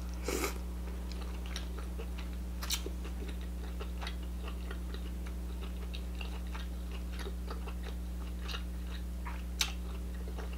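Close-miked chewing of king crab meat: soft wet mouth clicks and smacks, with a louder burst as the meat goes into the mouth about half a second in. A steady low electrical hum runs underneath.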